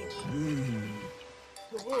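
Cartoon soundtrack: background music with a held note, a low vocal sound that rises briefly and then slides down in pitch, like an animal or character growl, and a cartoon voice starting near the end.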